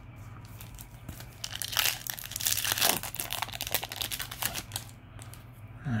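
Foil booster-pack wrapper crinkling and tearing open: a dense crackle from about a second and a half in until past four seconds, with lighter handling rustle before it.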